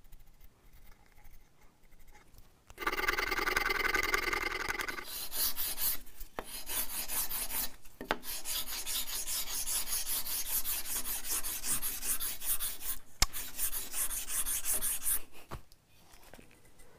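A small wooden block being shaped by hand with a rasp: after a quiet start, a squeaky rubbing for about two seconds, then fast, steady back-and-forth rasping strokes that stop just before the end. The block is being worked to a curve matching the radius of a guitar bridge top.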